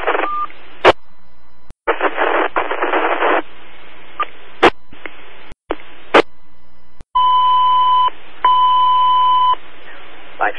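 Fire-dispatch radio scanner audio: bursts of hissing static that cut off abruptly with squelch clicks, and a short beep at the start. Near the end come two long steady alert tones of the same pitch, about a second each.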